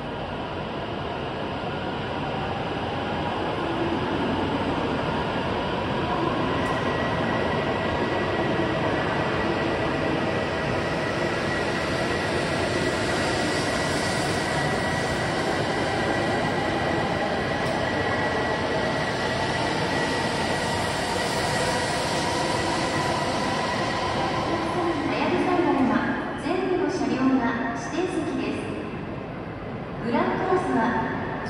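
An E7/W7-series Shinkansen train pulls out of the platform, its cars passing with a steady rush of noise and a motor whine that slowly rises in pitch as it gathers speed. Near the end the train sound fades under a platform announcement.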